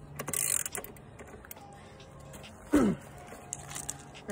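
Socket wrench handled on a dirt bike's rear axle nut: a brief rasping scrape about half a second in and a few scattered metal clicks over a steady low hum. A short falling vocal sound, like a sigh or grunt, comes just under three seconds in and is the loudest thing.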